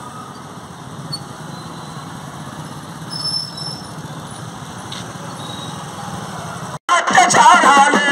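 A procession of motorcycles and scooters riding past, their engines running steadily. Nearly seven seconds in the sound cuts off abruptly and a loud song with music begins.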